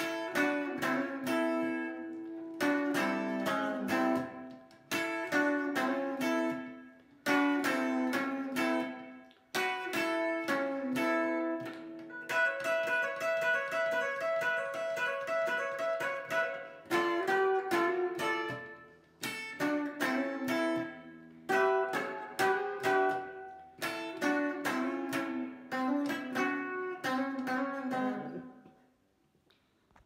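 Epiphone electric guitar played solo in a rock-and-roll ending: chords struck in a repeating pattern every second or two, a stretch of rapidly repeated notes in the middle, and a final chord that rings out and fades away near the end.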